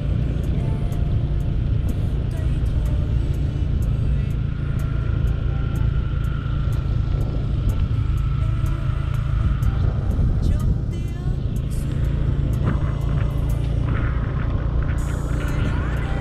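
Steady wind rush and road noise on the microphone of a camera riding on a moving motorbike, heavy and low.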